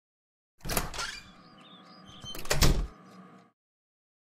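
A door opening and then shutting: a pair of knocks about a second in, then a louder bang as it closes a little before three seconds in.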